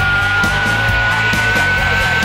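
Rock song playing, with one high note held steadily over the band.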